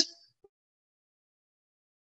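Near silence: a woman's voice cuts off right at the start, then nothing is heard.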